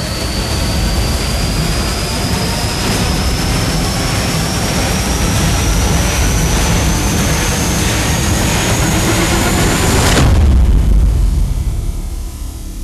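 Trailer sound-design riser: a loud, dense roar with a high whine that climbs steadily for about ten seconds, then cuts off abruptly into a deep boom that fades.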